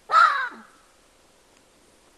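A chacma baboon gives one loud, short shout that drops in pitch at the end. It is the contact call baboons give when a split troop's groups have drifted too far apart.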